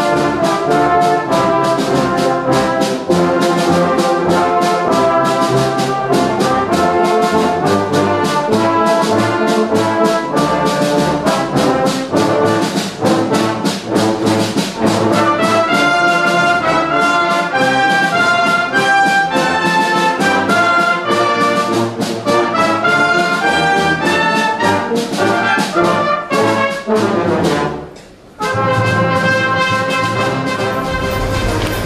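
Brass band playing live in full ensemble with a steady beat. Near the end the sound drops out for a moment, then the band comes back in.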